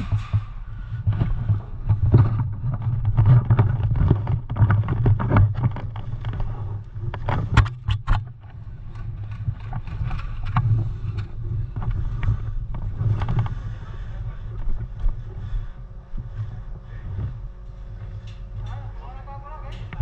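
Low rumble of wind and handling noise on a body-worn camera, with scattered clicks and knocks from the wearer's gear as he shifts position.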